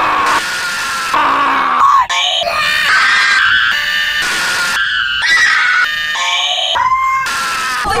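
A man screaming loudly in a long held cry, chopped into abrupt stuttering blocks by glitch editing; from about two seconds in, further screaming and wailing with pitch sliding up and down, still cut up into chunks.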